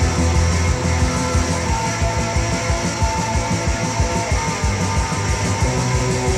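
Polish punk rock recording from a late-1980s cassette: electric guitars over bass and a steady, driving drum beat.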